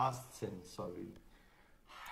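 A man's speaking voice, talking quietly for about a second and trailing off, then a short pause.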